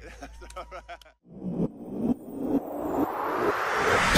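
Live concert recording: the last sung notes of a song tail off, the sound cuts out briefly about a second in, and then crowd noise from a live audience swells steadily louder.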